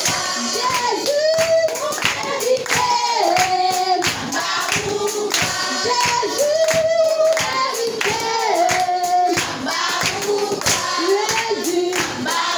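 A group of children and young people singing a worship song together in unison, with steady hand claps on the beat throughout.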